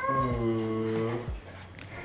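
A long, wordless vocal call, held low and falling slightly for about a second and a quarter.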